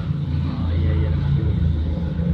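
Toyota Fortuner's diesel engine idling steadily, heard from inside the cabin.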